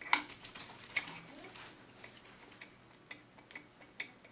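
A few irregular light clicks and taps as the black retaining hub of a label roll is fitted and turned by hand on a tamp label applicator's unwind spindle. The sharpest click comes right at the start, another about a second in, and fainter ticks follow in the second half.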